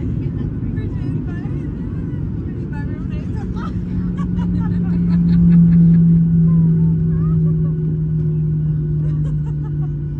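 Boeing 737 airliner's cabin during landing rollout: a heavy rumble of the engines and the wheels on the runway, with a low hum that comes in about three and a half seconds in and slowly falls in pitch. Passengers' voices murmur faintly underneath.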